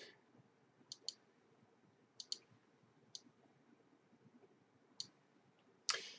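Computer mouse buttons clicking: about seven short, sharp clicks spread through a quiet stretch, some in quick pairs.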